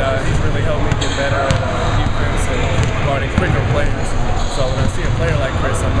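Basketballs bouncing on a hardwood gym floor in a large hall, with talking over it and a few sharp knocks.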